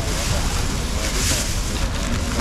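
Plastic bags rustling and crinkling as packs of frozen seafood are bagged by hand, with a louder surge of crinkling about a second in, over faint market chatter.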